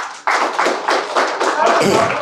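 A small group applauding: a dense, uneven patter of many hands clapping that starts right away and keeps going.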